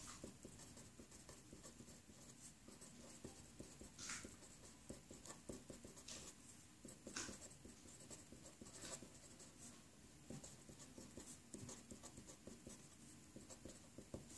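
Faint scratching of a Sharpie felt-tip marker writing on paper, with a few sharper strokes standing out.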